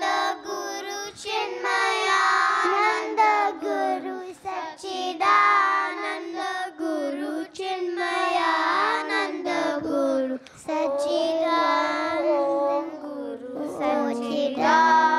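A group of children singing a Hindu devotional bhajan together into microphones, line after line, with short breaks between phrases.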